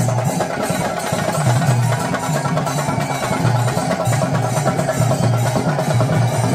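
Festival drumming: many drums playing a fast, continuous beat with a pulsing low pulse underneath, loud and without a pause.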